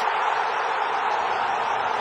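A large football stadium crowd cheering steadily as a goal goes in.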